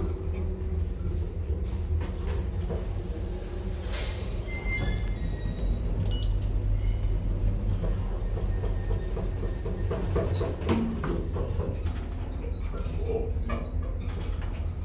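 Traction elevator heard from inside the car: a steady low hum under scattered clicks and rattles, a short high beep about five seconds in, and the car doors sliding open and closed.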